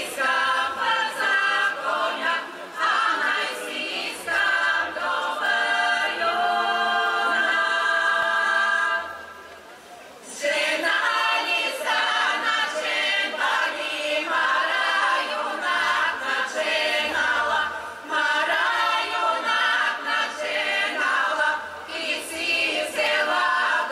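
Women's choir singing a Bulgarian folk song in close harmony, with long held notes, then a short pause of about a second and a half near the middle before the voices come back in.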